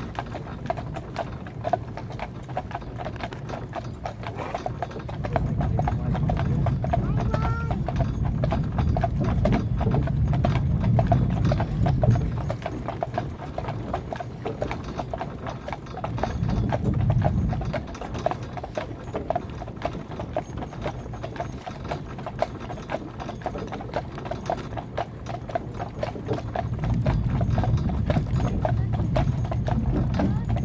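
Shod hooves of a pair of horses pulling a cart, clip-clopping in a steady rhythm on a tarmac road. A low rumble swells under them for several seconds at a time, about five seconds in, around sixteen seconds and again near the end.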